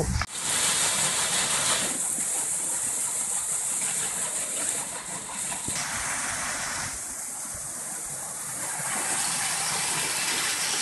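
Water rushing and splashing steadily as it pours from the flume's overflow spout into the tail race beside the waterwheel. The water gate is closed, so all the flow is bypassing the wheel. A brief knock at the very start.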